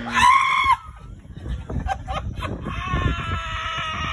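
A man laughing hard in high-pitched, drawn-out squeals: a short shriek at the start, broken laughter, then one long held wail near the end.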